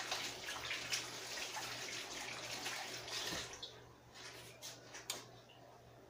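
Water running from a kitchen tap while hands are rinsed under it, stopping about three and a half seconds in, followed by a few light knocks.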